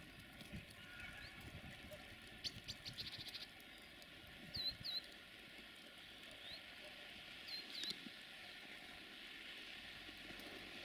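Faint small-bird calls: a quick rattling trill about two and a half seconds in, then two pairs of short upswept chirps, one around five seconds and one near eight, over a faint steady background.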